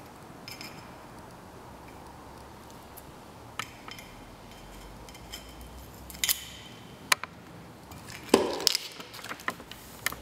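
Handling noise at a workbench: scissors, a tape dispenser and paper being picked up and set down on a heat press platen, heard as scattered sharp clicks and knocks. The loudest is a knock with a short rustle about eight seconds in.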